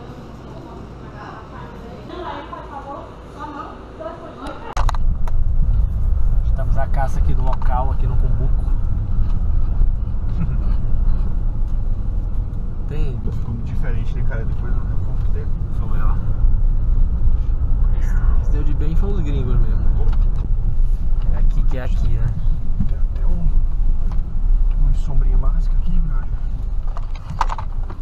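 Inside a moving car's cabin: a loud, steady low rumble of road and engine noise. It begins abruptly about five seconds in, after a quieter stretch of indistinct voices.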